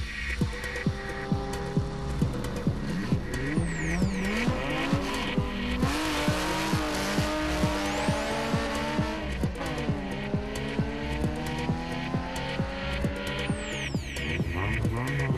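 Electronic dance music with a steady beat of about two a second, laid over a car at a drag-race start: the engine revs up hard a few seconds in, with tyre squeal as it launches, and revs up again near the end.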